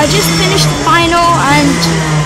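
Speech: a boy talking, over a steady low hum.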